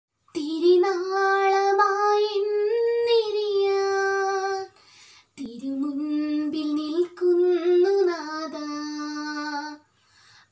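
A girl singing solo and unaccompanied, in two long phrases of held, sliding notes, with a short breath pause about five seconds in.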